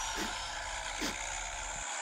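Low, steady rumble of a car engine running, as heard inside the cabin, with two faint short sounds about a quarter second and a second in.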